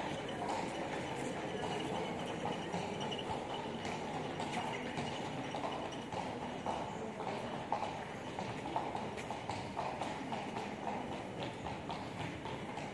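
Hard steps clopping irregularly on stone paving over a steady hum of street noise.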